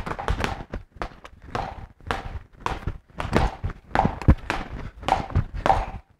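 Gloved punches landing on a spring-mounted reflex bag's ball in quick, irregular combinations, a few sharp knocks a second.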